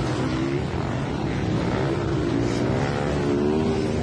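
Off-road dirt bike engine running at high revs as it ploughs through a muddy pond, its pitch wavering and climbing slightly, over a steady hiss of spraying water.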